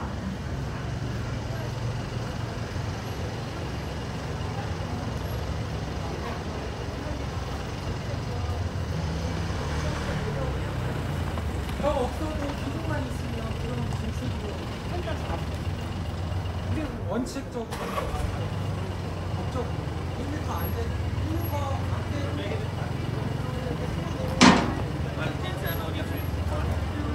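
City street ambience: a steady low traffic rumble with passers-by talking, and one sharp knock near the end.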